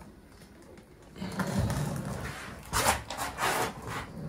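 Scraping and rubbing from a flexible plastic builder's tub being emptied of self-levelling compound and moved, starting about a second in, with two louder scuffs near the end.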